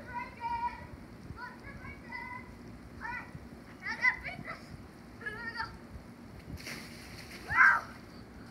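A child's wordless shouts and calls, ending in a loud yell about half a second before the end, with a short burst of splashing just before it as the child belly-flops onto a wet plastic water slide.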